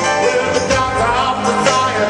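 Live rock band playing in an arena, recorded from far back in the audience: sustained chords over a steady drum beat, with no vocal line.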